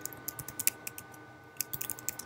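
Typing on a computer keyboard: a quick run of key clicks as a shell command is entered, a pause of about a second, then another short run of clicks.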